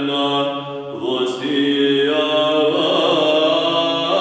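Male voices chanting a Byzantine hymn in the Saba mode over a steady low drone. The melody breaks off briefly about a second in, with a short hiss, then goes on.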